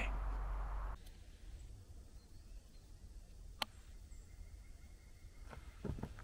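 Low rumbling noise for about the first second, stopping abruptly, then quiet woodland ambience with one sharp click in the middle and a faint, thin, steady high tone near the end.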